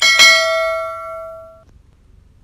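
Sound effect of a click followed by a single bell ding that rings out and fades away within about a second and a half.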